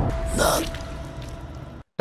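A short breathy gasp about half a second in, over a low rumble that fades away.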